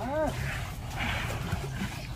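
Young Asian elephant giving one short squeak that rises and falls in pitch right at the start, followed by soft splashing of water in a plastic tub.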